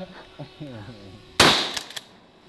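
A single 12-gauge shotgun blast about a second and a half in: a sharp report followed by a short echo.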